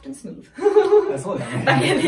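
A man and a woman laughing together, starting about half a second in.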